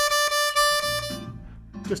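C diatonic harmonica, in second position, playing one note, the 4 draw, repeated in quick tongued triplets: a steady pitch broken into short, even attacks for about a second and a half. Speech follows near the end.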